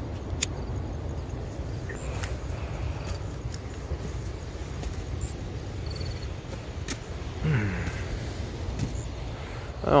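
Steady low outdoor rumble with a few scattered faint clicks. A short falling vocal sound comes from a man about seven and a half seconds in, and he starts speaking right at the end.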